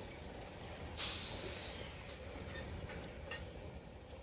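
Covered hopper cars rolling slowly past on the rails with a low steady rumble of wheels. A brief hiss starts suddenly about a second in and fades, and a faint click follows near the end.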